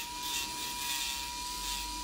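Electric nail drill (e-file) with a ceramic bit filing cured acrylic gel on a fingernail, shaping the arch. It gives a steady high whine with a grinding hiss.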